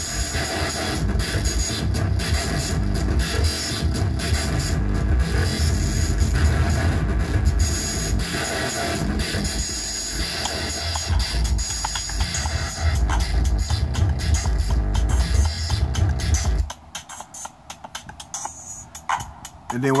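Electronic drum loop programmed in the DM1 drum machine app on an iPhone, run through an Elektron Analog Heat and effects pedals, playing with heavy bass and distorted textures. It cuts off about three-quarters of the way through, leaving a few faint clicks.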